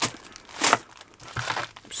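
Small plastic zip-lock bags of beads crinkling as they are picked up and handled, in a few short rustles, the loudest a little under a second in.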